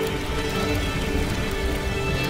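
Film score music over the crackle of burning rubble, with a low rumble underneath.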